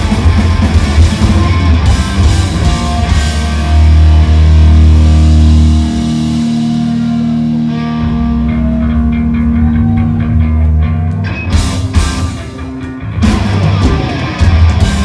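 Live hardcore punk band playing loud distorted electric guitars, bass and drums. In the middle the band holds sustained ringing chords for several seconds, then a run of sharp hits leads the full band back in near the end.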